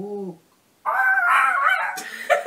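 A short low hum from a person, then from about a second in a loud, high-pitched vocal squeal whose pitch wavers, the start of a laugh.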